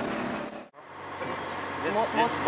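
Steady running and road noise of a tutu, a motorcycle pulling a passenger cart, heard from aboard, cut off abruptly less than a second in. Quieter background follows, with people's voices starting near the end.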